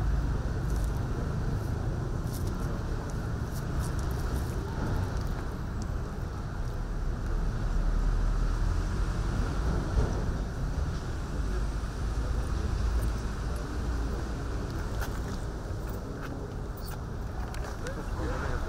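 Outdoor ambience: a steady low rumble with faint murmuring voices in the background.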